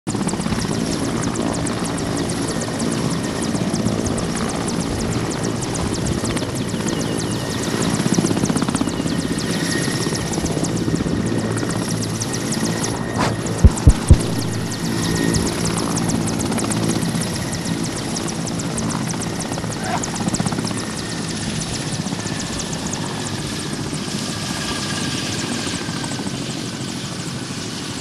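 Indian Air Force Mi-17 helicopter running on the ground, its turbines and main rotor giving a steady, loud din with a thin high turbine whine over it. About halfway through, three brief, very loud low thumps stand out.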